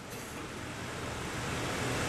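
A steady rushing background noise with no voice in it, slowly growing louder.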